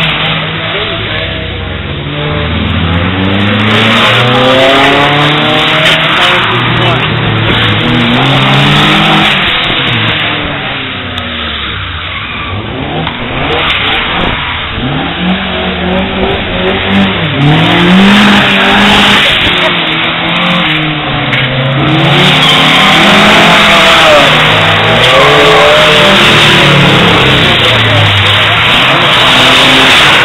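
Ford Escort drift cars' engines revving hard and dropping back again and again, the pitch rising and falling with each throttle blip, with more than one car audible at once. The sound grows louder through the last third.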